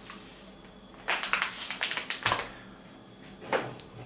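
Plastic packet of maize flour crinkling and rustling as it is tipped and shaken out into a blender jug. There are bursts of crackle about a second in and just after two seconds, and a short one near the end.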